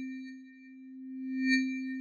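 Synthesized transition sound under a title card: a steady low electronic tone with a high, bell-like shimmer on top that swells to a peak about one and a half seconds in and fades again.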